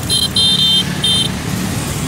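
Street traffic: a steady low traffic rumble with three short, high-pitched vehicle horn beeps in the first second or so.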